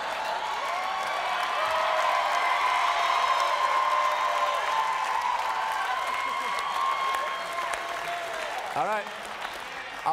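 Studio audience applauding and laughing. It eases off in the last second or so, as a man's voice comes in.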